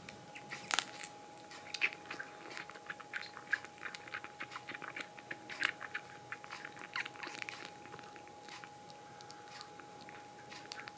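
Soft, irregular clicks and rustles from two young kittens grooming and shifting on a fleece blanket. They are busiest in the first eight seconds, then thin out as the kittens settle.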